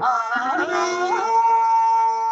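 A singer's voice winding through an ornamented phrase, then holding one long high note over a steady drone, in the manner of a Telugu padyam verse from mythological stage drama.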